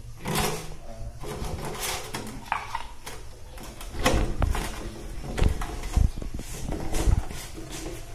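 A plastic jar and its screw-on plastic lid being handled: a series of knocks and clicks as the lid is pressed down and twisted shut, louder from about four seconds in.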